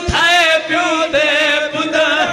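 Several men's voices chanting in unison into a microphone, with long held notes that waver in pitch. There is a dull low thump just as it begins.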